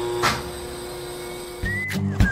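Cartoon sound effects: a steady electric hum with a single sharp thump about a quarter second in. Near the end it gives way to a whistled tune over a rhythmic beat.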